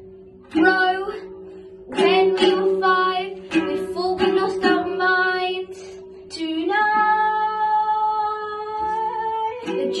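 Girls singing an improvised song in short phrases, ending on one long held note in the last few seconds, over a steady plucked-string accompaniment.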